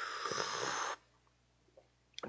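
A person slurping a sip of a dark drink from a mug, a noisy airy sip that lasts about a second and then stops.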